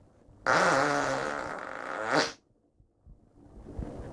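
A single long fart, a pitched buzz of just under two seconds that rises at the end and stops suddenly.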